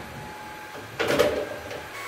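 A short scraping rustle about a second in, as an object is picked up and handled, followed by a few light ticks over a faint steady hum.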